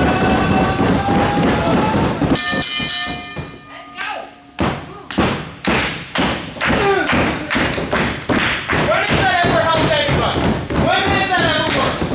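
Rhythmic hand clapping, about two claps a second, with voices shouting over it in the second half. Before it, entrance music with gliding tones plays and ends about two seconds in on a ringing tone.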